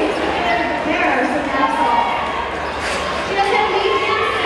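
Indistinct voices echoing in a large hall, with scattered thuds of roller skates on the track floor.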